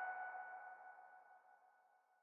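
The final ringing notes of electronic background music dying away over the first second, then silence.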